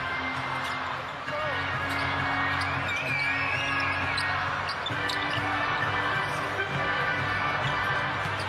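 Arena music playing over the crowd, with a basketball being dribbled on the hardwood court.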